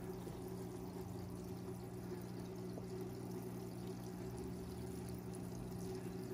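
Steady running water in an aquarium, from the tank's water flow, with a low, even hum underneath.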